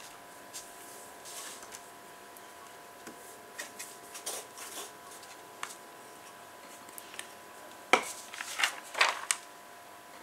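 Glue stick and paper being handled on a cutting mat: faint scattered clicks and rustles, with a cluster of louder clicks and paper rustling near the end.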